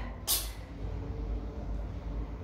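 A man breathing hard during push-ups: one short, sharp breath a fraction of a second in, over a steady low hum.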